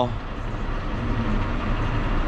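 John Deere 6155M tractor's engine running steadily under load, heard from inside the cab while driving across a field with a fertiliser spreader attached.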